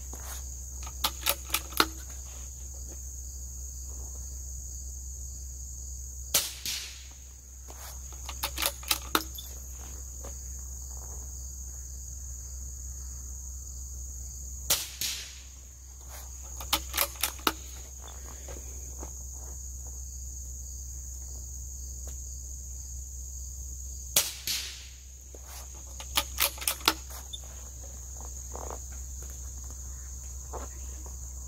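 Suppressed Vudoo V22 .22LR bolt-action rifle fired three times, about eight to nine seconds apart. About two seconds after each shot comes a quick run of four or five metallic clicks as the bolt is worked. Crickets chirp steadily underneath.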